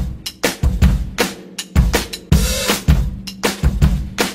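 A drum kit playing a beat on its own, with kick drum, snare and cymbal hits and no singing.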